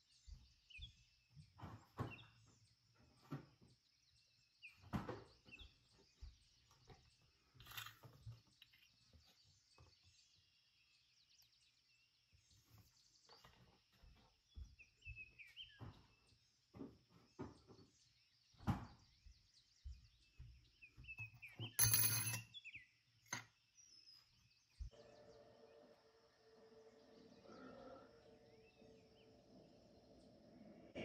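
Quiet kitchen room tone with a faint steady high whine, broken by scattered small clicks and knocks and one louder clatter about two-thirds of the way through. A faint low hum comes in near the end.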